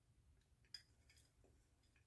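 Near silence: room tone with a few faint, short clicks, the loudest about three quarters of a second in.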